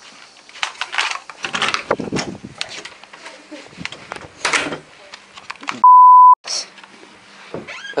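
A loud, steady beep at one high pitch, lasting about half a second some six seconds in and cutting off sharply: an edited-in censor bleep. Before it, muffled scuffling and knocks.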